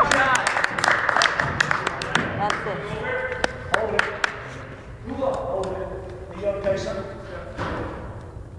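Indistinct voices of players talking and calling out, echoing around a gymnasium, with scattered sharp taps through the first half.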